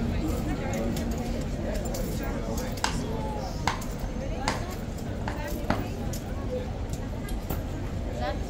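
Indistinct chatter of people over a steady low outdoor rumble, with about half a dozen sharp clicks scattered through the middle and end.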